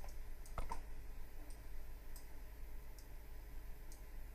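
Computer mouse clicks: a sharp double click about half a second in, then a few fainter single clicks, over a low steady hum.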